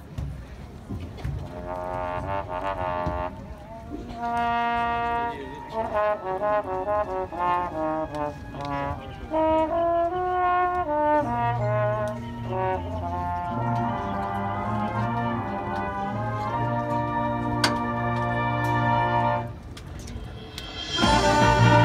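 Marching band brass playing a slow passage of long, held chords, with low brass sustaining deep bass notes from about halfway through, and one sharp hit near the end.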